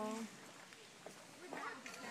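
Lion's roaring bout trailing off: the last drawn-out grunt falls in pitch and fades about a quarter second in, leaving near quiet with faint sounds near the end.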